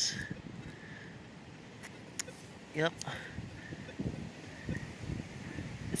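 Faint handling sounds as a chain with a pendant is pulled by hand out of wet mud: a few small clicks about two to three seconds in, and a low rumble a little later.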